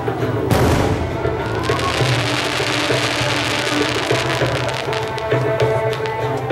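Aerial fireworks: a loud boom about half a second in, then a few seconds of dense crackling from the bursting shells, heard over music.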